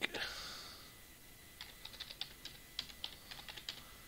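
Typing on a computer keyboard: a quick run of about a dozen light key clicks in the second half as a word is typed. A soft breathy hiss fades out over the first second.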